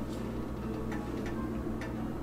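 Steady low electrical hum of a kitchen refrigerator, with a few faint, unevenly spaced ticks.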